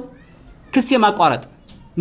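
A man speaking: one short phrase, falling in pitch, about a second in, with pauses either side.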